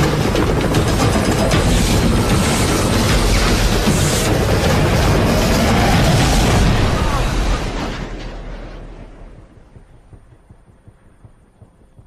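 Loud, deep rumbling roar of a film explosion effect. It holds for about seven seconds, then dies away over the next two or three seconds.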